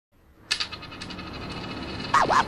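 A sharp metallic clink about half a second in, followed by a fast, fading rattle of clicks, over a low hiss that slowly swells: the opening of the soundtrack's intro.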